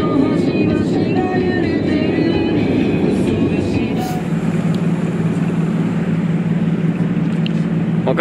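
Background music over a dense low vehicle rumble; about halfway through a short whoosh, after which a steady low engine hum carries on.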